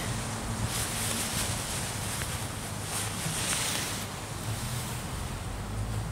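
Nylon hammock fabric rustling as it is unfolded and spread out by hand, in a fairly even hiss with a few louder swishes, over a steady low background noise.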